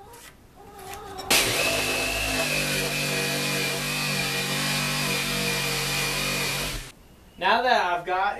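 Electric jigsaw crosscutting a 2x4 to length: the saw starts about a second in, runs steadily with a high whine for about five and a half seconds, then cuts off suddenly.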